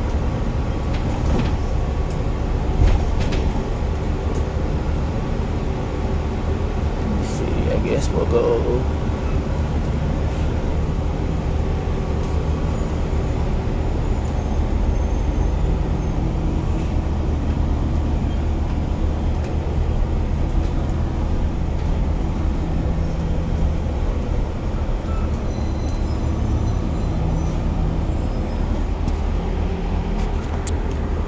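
Engine of a Gillig Advantage LF low-floor transit bus running steadily while the bus moves slowly, heard from inside the driver's cab as a continuous low drone.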